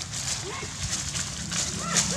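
Young long-tailed macaques squealing during a scuffle: several short, arching, high-pitched cries, more of them near the end, with crackling rustles of dry leaves.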